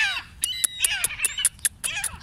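Gulls calling in short cries over a squabbling flock, mixed with a run of sharp, high ticks.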